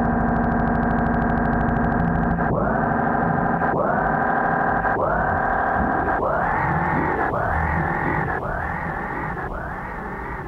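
Modular synthesizer music. A dense, many-toned chord is held with a rapid pulsing, then about two and a half seconds in it turns into repeated notes, about one a second, each swooping up in pitch and arching over before the next cuts in.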